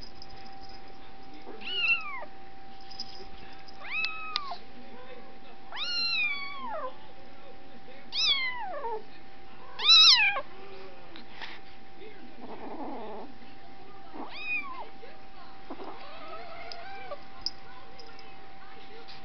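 A cat meowing repeatedly: about seven short, high meows, each falling in pitch, the loudest about ten seconds in. A faint steady hum runs underneath.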